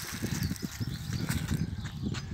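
Wind noise on the camera's microphone, an uneven low rumble with a few faint clicks.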